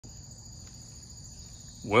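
Steady high-pitched insect chorus of crickets, a continuous trill at two pitches. A man's voice starts near the end.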